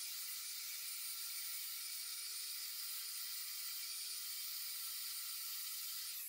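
Quiet, steady hiss with a faint constant hum beneath it: background room tone. No tool is running.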